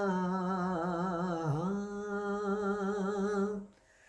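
A man's unaccompanied voice holding one long wavering note, dipping in pitch and coming back about a third of the way through, then stopping shortly before the end.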